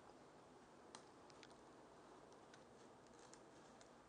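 Near silence: quiet room tone with a few faint small clicks, the clearest about a second in.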